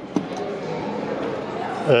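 Arcade background din with one sharp click just after the start and a faint steady hum in the second half.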